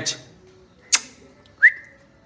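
A person's short whistle near the end, jumping quickly up in pitch and held briefly, calling the dog's attention. About a second in there is a brief sharp sound.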